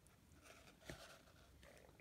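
Near silence with faint handling noise from fingers working small beads onto fine beading wire, and one small tick about a second in.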